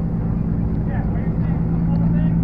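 A car engine running at a steady idle, a constant low hum, with faint voices over it.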